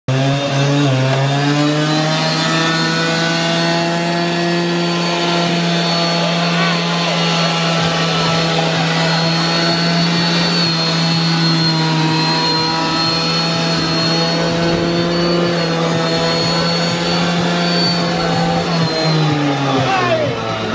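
Classic Vespa scooter's two-stroke single-cylinder engine revved up in the first second and held at high revs on a steady note, then dropping back just before the end.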